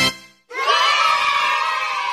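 Sound effect of a group of children cheering, starting about half a second in after a short break and held in one long cheer that slowly fades.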